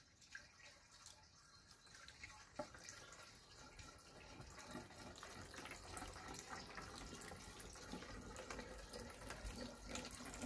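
A pH Up and water solution being poured into the top of a hung diesel particulate filter, filling it for the soot- and oil-dissolving first wash. The pouring is faint, building from about two seconds in and growing a little louder.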